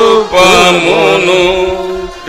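Men's voices singing a Telugu Christian worship hymn together in a slow, chant-like melody. A held note breaks off shortly after the start, then the next line comes in and fades toward the end.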